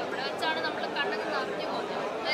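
Speech only: people talking over one another, a crowd's chatter.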